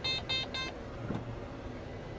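A quick run of short electronic beeps from the combine's cab console as the drive is shifted into third gear, over the steady low hum of the combine running, heard inside the cab.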